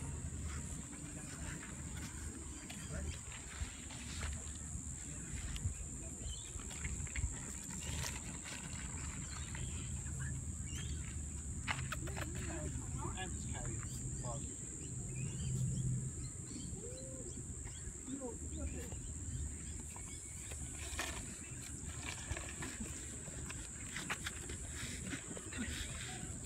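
Outdoor ambience dominated by a steady, high-pitched insect drone, over a low rumble and faint distant voices.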